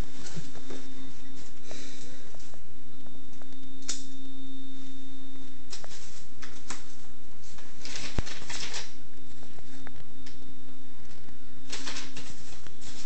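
Hands opening a cardboard box: a box cutter slitting the packing tape at the start, then flaps pulled open and hands rummaging through foam packing peanuts in irregular bursts of rustling and scraping, with one sharp click about eight seconds in. A faint steady low hum runs underneath.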